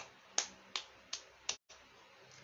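A run of short, sharp clicks in an even rhythm, about three a second, five of them in two seconds, such as a hand keeping time.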